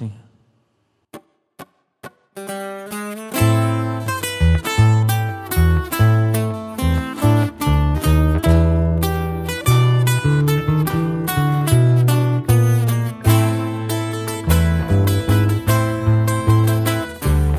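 Corrido tumbado instrumental intro on a twelve-string acoustic guitar, a six-string acoustic guitar and an acoustic bass guitar. It opens with three short taps, then a guitar comes in alone, and within a second the full group joins with fast plucked runs over a steady bass line.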